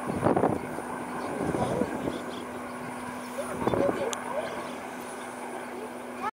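Steady low drone, as of a distant aircraft engine, with three short louder bursts of noise about a second and a half to two seconds apart.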